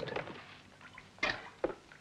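A couple of faint, short knocks or scrapes, one a little over a second in and another about half a second later.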